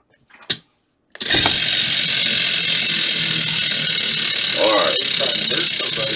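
Large pegged prize wheel spun hard about a second in, its pegs clattering in a fast, steady ratcheting as it whirls at full speed.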